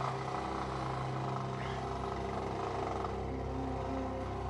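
Motorcycle engine running steadily while riding along a road.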